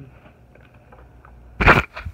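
Quiet room tone, then about one and a half seconds in a single short, loud scuff of handling noise as the recording phone is picked up and moved.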